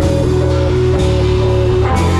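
Doom/stoner rock band playing live: heavy electric guitars and drum kit with a bowed cello, holding long, loud, low sustained chords with a couple of drum hits. Recorded through a GoPro's microphone in the room.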